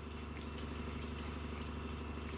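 A steady low background hum with a faint hiss, unchanging and with no sudden sounds.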